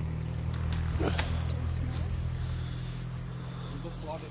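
A steady low hum runs throughout, with a few light clicks and a brief faint voice-like sound about a second in.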